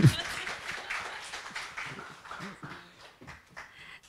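Audience applause that dies away gradually over a few seconds.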